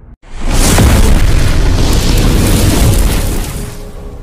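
Explosion sound effect for an animated fireball intro: a sudden loud blast that carries on as a rumbling roar for about three seconds, then dies away near the end.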